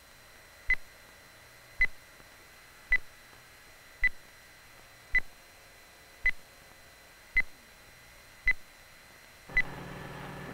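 Underwater acoustic pings, as from a sonar or a torpedo's locating pinger: nine short, high tones, one about every second, evenly spaced.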